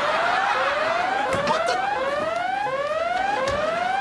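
Electronic siren sound effect played loud from a handheld sound-effects blaster through a horn speaker: a repeating rising whoop, about three sweeps every two seconds, each dropping back and climbing again.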